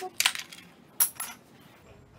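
Two short clinks and rattles of small hard objects being handled, about a quarter second and a second in, as makeup items are picked through while reaching for a brush.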